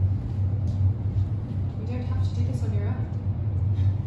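A steady low hum fills the room throughout, with a voice speaking faintly about two seconds in.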